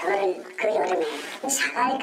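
Speech only: a person talking in Korean.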